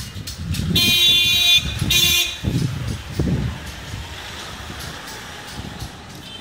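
A vehicle horn honks twice, a toot of most of a second followed by a shorter one, over low street traffic noise.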